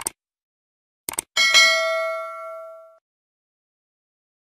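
Subscribe-button animation sound effect: a mouse click, a quick double click about a second in, then a bright bell ding that rings and fades over about a second and a half.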